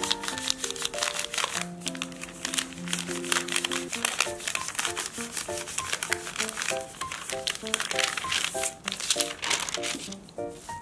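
Baking paper crinkling and rustling in quick, irregular crackles as gloved hands roll a log of cookie dough on it, over light instrumental background music with a plain melody.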